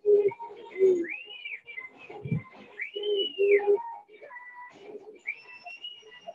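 Birds calling: short, low, steady notes repeated several times, and two rising-then-falling whistles about a second long, one about a second in and one about three seconds in.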